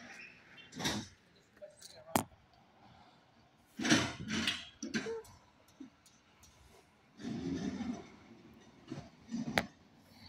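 Door of a Ram TRX pickup being opened and the cab entered: a few sharp latch clicks and knocks with short rustling bursts in between.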